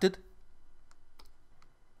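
A few faint, sharp clicks of a computer mouse or keys, spaced about half a second apart, with low room tone between them.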